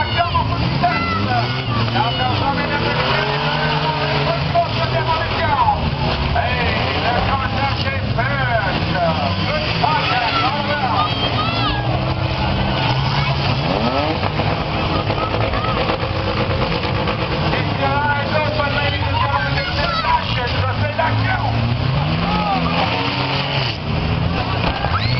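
Several demolition derby car engines revving and running hard, their pitch rising and falling again and again, over the voices of the crowd.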